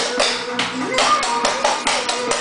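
Dance shoes striking a hard floor in quick tap footwork, several sharp taps a second in an uneven rhythm, over music playing.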